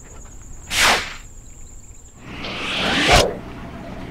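Insects trilling steadily until about two seconds in, with a quick swish near the first second; then a whoosh builds up and ends in a sudden low thump just past three seconds, a scene-transition sound effect.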